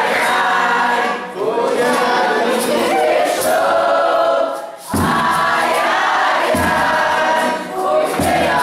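Voices singing a Brazilian folk song in a group, with a viola caipira and a shaker behind them. The singing breaks off briefly a little past halfway, and low drum strokes come in after it, about one every second and a half.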